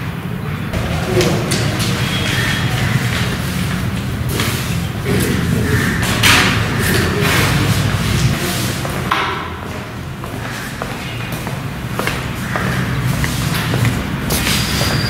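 Busy room noise in a bare-walled hall: indistinct murmured voices with scattered knocks and thuds of handling at the desks.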